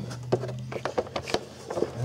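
Small irregular clicks and taps, about eight in two seconds, from an oscilloscope probe lead and its ground clip being handled against metal in a car's engine bay, over a steady low hum.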